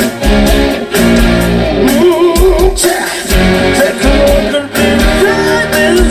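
Live rock band playing loudly, with electric guitar and drums and a male lead vocal.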